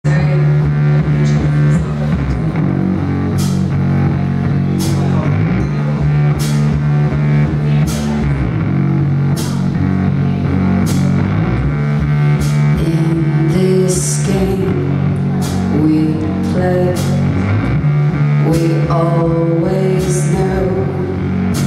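Live rock band playing an instrumental intro: electric guitar, bass, keytar and drum kit, with held low chords that change every few seconds and cymbal crashes about every second and a half.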